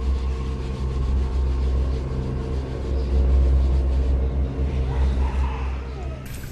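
A low, steady rumble with a constant hum beneath it, swelling and easing slightly but with no distinct event. A faint voice can be heard about five seconds in.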